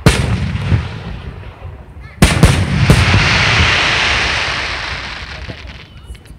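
Aerial firework shells bursting: one loud bang at the start, then a second burst of several bangs about two seconds in, followed by a long hiss that slowly fades away.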